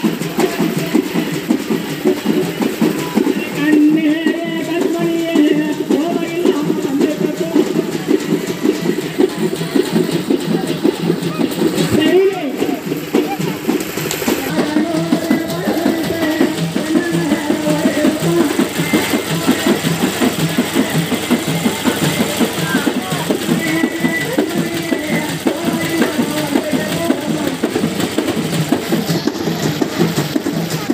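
Frame drums beaten in a fast, steady rhythm, with voices singing over them and crowd voices in the background.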